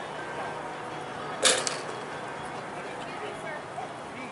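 Agility teeter-totter board banging down once under a small terrier's weight, one sharp clack about a second and a half in.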